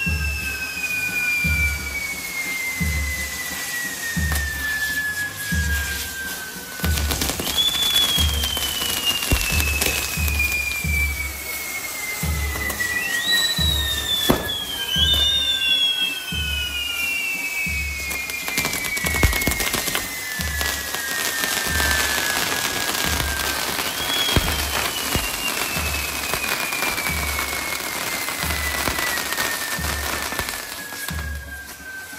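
Fireworks on a castillo tower burning: long whistles that slide slowly down in pitch, several overlapping, over steady crackling with a few sharp bangs. Music with a steady bass beat plays underneath.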